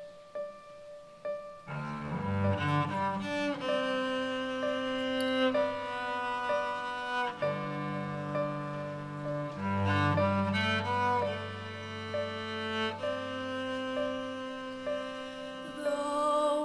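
Instrumental introduction for piano and cello. A single piano note repeats at first, then about two seconds in a cello enters with long bowed low notes under sustained piano chords.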